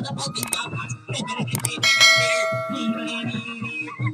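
A bright, bell-like metallic ring struck about two seconds in, its several steady tones fading over about a second and a half. It sounds over live band music with a steady low beat.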